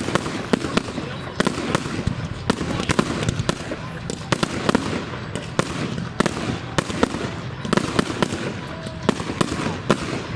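Fireworks display finale: a rapid, irregular barrage of bangs from shell launches and bursts, several a second, over continuous noise between them.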